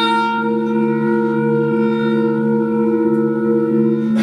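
Free-improvisation ensemble of French horn, saxophone and electric guitar with electronics holding several long, steady notes together, layered into a sustained drone.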